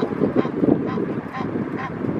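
Egyptian geese calling: a run of short, repeated calls, about two a second.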